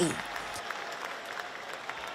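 Audience applauding in a large hall, steady and fairly faint.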